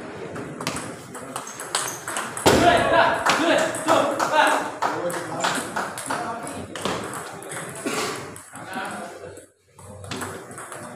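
Table tennis ball clicking off paddles and bouncing on the table during a rally, a string of sharp pings. Voices talk over it, loudest from about two and a half seconds in.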